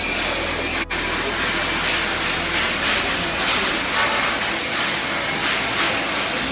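Loud, steady hissing din of a busy metal fabrication workshop with many workers at work on steel frames, with faint irregular knocks through it.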